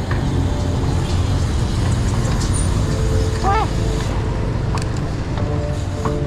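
Low, steady rumble of car engines in slow, congested road traffic. A short voiced sound comes about halfway through, and steady music tones come in near the end.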